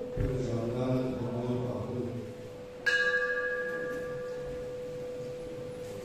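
A hanging bell struck once about three seconds in, ringing with several clear tones that fade slowly. A steady hum-like tone runs underneath, and a low voice is heard in the first two seconds.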